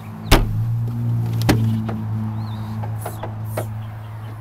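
Rear swing-out door of a Toyota FJ Cruiser being unlatched and swung open: a sharp clunk about a third of a second in, a second knock about a second later, then a few light taps, over a steady low hum.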